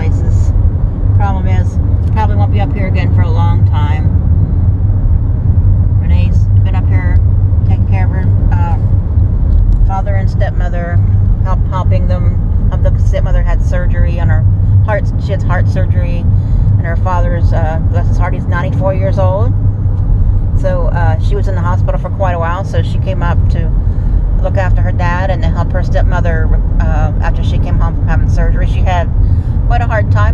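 A person talking over the steady low rumble of road and engine noise inside a moving car's cabin.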